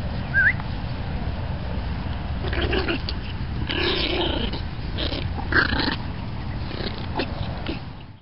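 Dogs growling and snarling in play over a tug toy, in a run of rough growls from about two and a half seconds in, with a short rising squeak near the start. Wind rumbles low on the microphone throughout.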